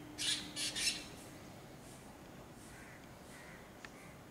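Drongos calling: three loud, harsh calls in quick succession in the first second, then a few faint calls. A short click comes near the end.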